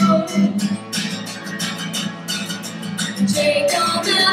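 Live pop-rock band music: acoustic guitar over a steady beat. A sung note ends just as it begins, and female singing comes back in near the end.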